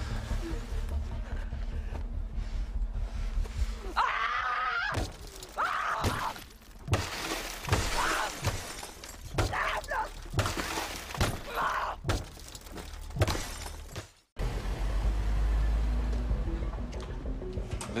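Film action-scene soundtrack: a low music drone, then about ten seconds of sharp impacts and breaking glass with shouting over it, cut off abruptly about 14 seconds in before the low drone returns.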